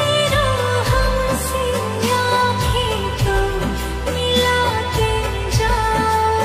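Hindi film love song in a slowed lofi remix with added reverb: a gliding sung melody over sustained bass notes and a steady beat.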